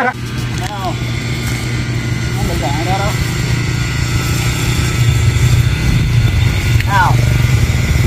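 Husqvarna 365 two-stroke chainsaw idling steadily, getting somewhat louder over the first few seconds.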